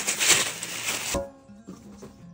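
A rustling, scuffling noise that stops abruptly with a sharp click about a second in, followed by faint background music.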